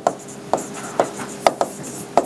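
A stylus tapping and scraping on the glass of an interactive touchscreen whiteboard as words are handwritten, giving several sharp ticks, roughly two a second.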